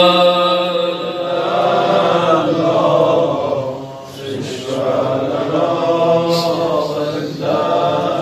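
A man's voice chanting a long, wavering, wordless melodic line in the mournful style of Shia supplication recitation, heard through a handheld microphone. It fades nearly away about four seconds in, then picks up again.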